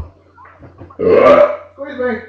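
A man burping once, loudly, for about half a second, about a second in.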